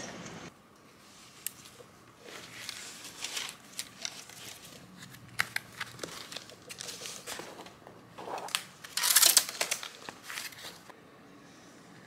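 Flat-packed cardboard boxes being handled and shuffled on a table: dry scraping, sliding and tapping of card, with the loudest burst about nine seconds in.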